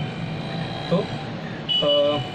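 A man's voice: a short spoken word about a second in, then a brief held sung note near the end, over a low steady background hiss.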